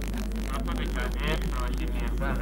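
Faint, distant speech over a steady low hum.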